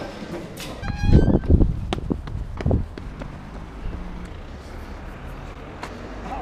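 Knocks, thuds and rustling from a handheld camera being carried along, with a short squeaky tone about a second in. From about three seconds in, a steady low street-traffic background.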